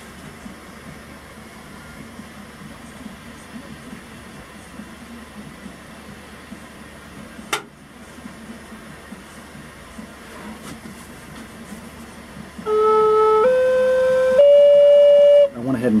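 A low steady hiss with a single click about halfway through, then near the end a Native American flute sounds three held notes, each about a second long and each a step higher than the last. The notes are being checked against a tuner while the flute is tuned to A=432 Hz.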